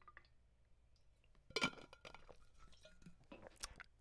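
Faint gulps of water being swallowed from a bottle, with small wet mouth clicks, the loudest cluster about one and a half seconds in and a few smaller clicks after it.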